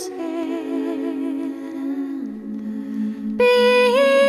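A woman singing with layered vocal harmonies: the held end of a sung word gives way to sustained, hummed-sounding chord notes, the lowest of which steps down about two seconds in. About three and a half seconds in, a louder sung note comes in on "Be".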